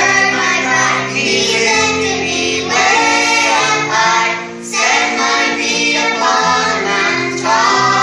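A group of children and teenagers singing a gospel song together into handheld microphones, with a short break between phrases about halfway through.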